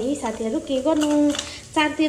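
A woman's voice, untranscribed, over the faint sizzle of masala frying in a steel kadai; the voice breaks off briefly near the end.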